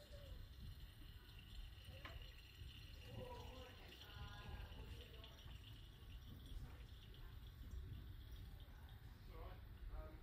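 Near silence: room tone, with a faint click about two seconds in.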